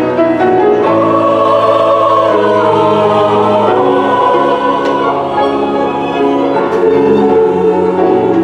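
Mixed-voice church choir of men and women singing, holding long notes.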